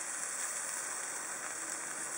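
Sausages sizzling in a frying pan on a portable gas camping stove: a steady, even, high hiss.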